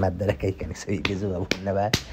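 People talking, with two short, sharp clicks in the second half.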